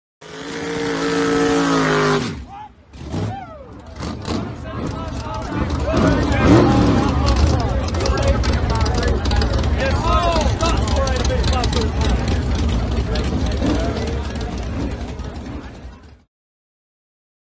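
A vehicle engine running with people's voices over it. It opens with a held pitched tone that drops off at about two seconds, and after a short lull a steady low engine rumble with voices and scattered clicks builds up from about four seconds.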